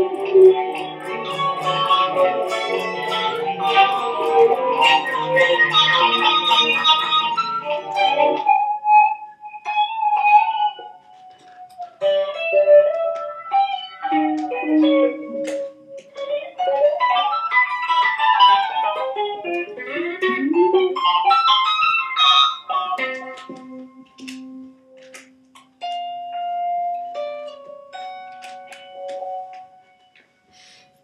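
Solo electric guitar music played through effects. Dense layered chords stop abruptly about eight seconds in, giving way to sparse single-note melody with quick runs up and down and long held notes.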